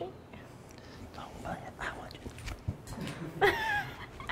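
Quiet, low talk and whispering, then a short high-pitched wavering voice near the end.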